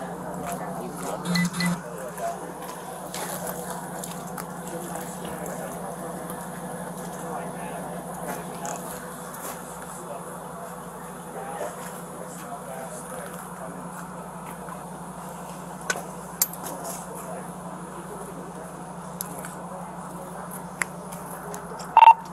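Faint distant voices over a steady low hum, with a few short clicks and rustles from the body-worn camera and the officer's clothing.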